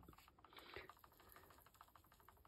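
Faint, fast run of small ticks as a dry gravel-and-grit terrain mix is shaken from a plastic tub into a mould.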